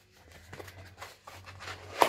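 Plastic wrapping crinkling and rustling faintly as a small double-wrapped item is unwrapped by hand, with a sharper crackle near the end.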